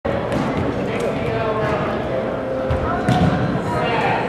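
Indoor volleyball game sounds: overlapping voices of players and spectators, with scattered sharp thumps of the ball being played and shoes on the hardwood court.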